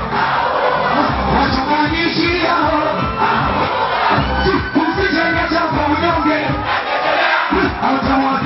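Live concert: a large crowd shouting and singing along over loud amplified music with a steady bass, a male voice on the microphone mixed in.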